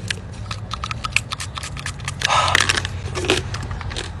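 Handling noises: small clicks and taps of plastic packaging and containers, with a short hiss of a breath spray pump about two seconds in, over a steady low hum.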